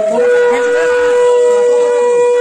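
Conch shell (shankha) blown in one long, steady note, its pitch dropping a little just after the start and then held.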